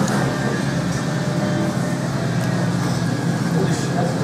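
Steady low background hum with an even wash of room noise, unchanging throughout.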